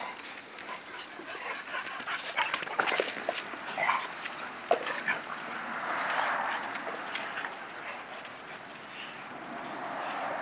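Pit bulls play-wrestling, making dog vocal sounds, with scattered sharp clicks and scuffs throughout and a louder stretch about six seconds in.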